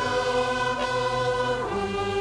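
Choir singing held chords with flute and violin accompaniment; the chord changes near the end.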